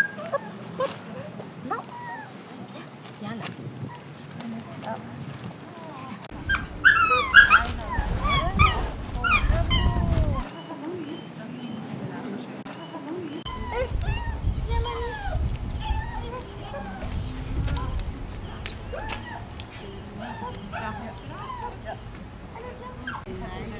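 Small dogs giving repeated short, high-pitched calls, loudest in a run about seven seconds in, over indistinct voices.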